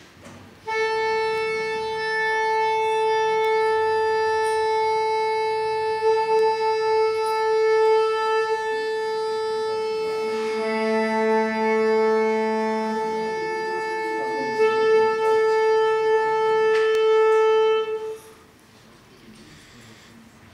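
Saxophone holding one long steady note for about seventeen seconds, with a second, lower note sounding with it for a couple of seconds in the middle before the note stops. It sounds like the quartet tuning to a shared pitch before playing.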